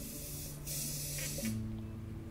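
A short burst of hissing, under a second long, over soft music with held low notes.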